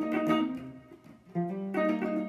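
Hollow-body electric guitar playing a blues riff as two-note chords barred across the D and G strings. A chord rings and fades over the first second, then another is struck about one and a half seconds in and held.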